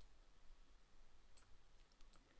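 Near silence: room tone with a few faint computer mouse clicks about one and a half to two seconds in.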